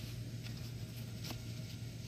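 A pause in speech filled with faint steady background hum and hiss, with one light click a little past a second in.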